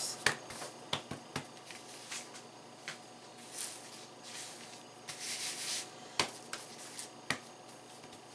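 Hands handling bread dough on a flour-dusted, cloth-covered table: scattered light taps, with short stretches of soft rubbing in the middle as a dough ball is picked up and pressed flat by hand.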